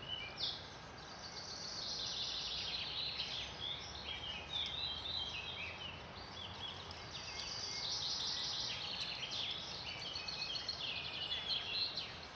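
Birds singing in the trees: a dense, continuous run of short high chirps and trills over faint steady outdoor background noise.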